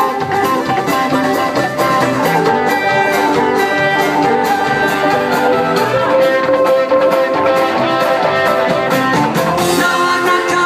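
Live band playing: acoustic guitars, electric bass and fiddle over a steady drum-kit beat.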